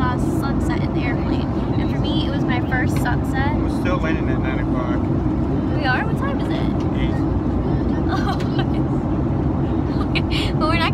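Steady low drone of an airliner cabin in flight, the engines and airflow, with faint voices of people nearby.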